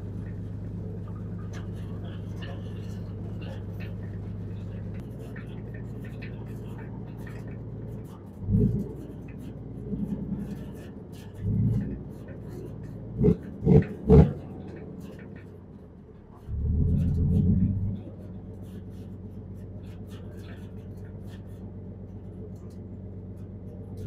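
Dump truck's diesel engine running steadily, heard from inside the cab as a low hum. Several short louder sounds come in the middle, and a louder stretch of about a second and a half follows near two-thirds of the way through.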